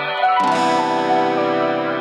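Acoustic guitar fingerpicked through major-seventh chords. A new chord is struck about half a second in and rings on.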